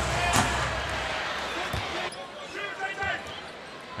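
Basketball arena crowd noise on the broadcast feed, with a couple of sharp knocks of a ball bouncing on the hardwood court and faint distant voices. The crowd sound drops suddenly about halfway through.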